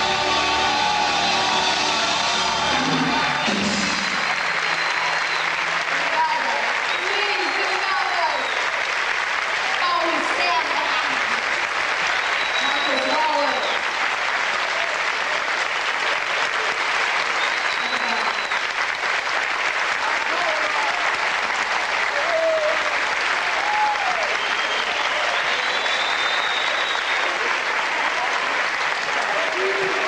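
A live band's final chord rings out for about the first four seconds, then the audience applauds steadily, with scattered calls from the crowd over the clapping.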